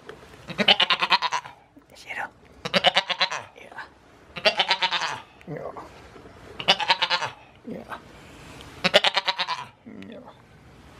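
Goat bleating five times, about every two seconds, each bleat a loud quavering call just under a second long.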